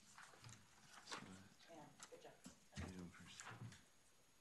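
Faint speech: voices talking quietly, too low for words to be made out.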